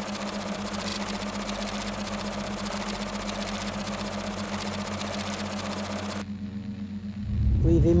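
Electronic static hiss over a steady low hum. The static cuts off suddenly about six seconds in, leaving the hum, and a low swell rises near the end.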